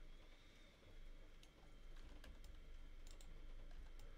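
Near silence with a few faint, scattered clicks from a computer keyboard and mouse.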